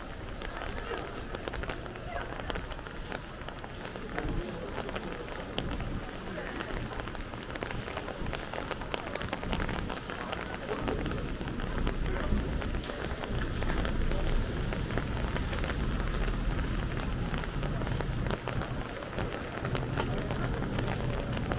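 Steady spring rain falling on a wet street, with many small drops ticking close by, and footsteps on the wet pavement. Faint voices come and go, and a low rumble grows louder in the second half.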